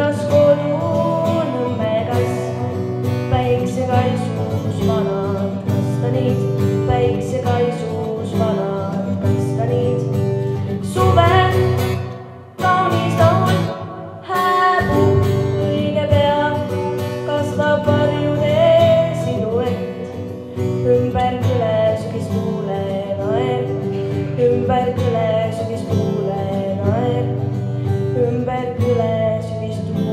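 A girl singing a song into a handheld microphone over an instrumental accompaniment, the music dropping away briefly about halfway through.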